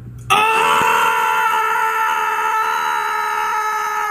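A person's long scream of excitement, starting suddenly about a third of a second in and held loud and steady on one high pitch.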